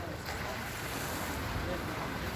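Steady wind and water noise, with faint distant voices.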